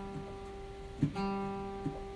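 A guitar note ringing out. The same single note is plucked again a little over a second in and rings on steadily, with a small knock near the end.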